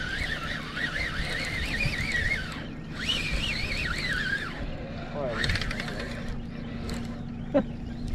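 Baitcasting fishing reel whining under a hooked fish, a warbling high-pitched whine that wobbles several times a second. It breaks off briefly about two and a half seconds in and returns for about another second and a half, then fades to scattered small sounds, with a click near the end.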